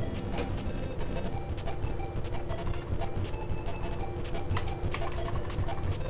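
Scattered clicks from typing on a computer keyboard, a handful across the stretch, over a steady low hum.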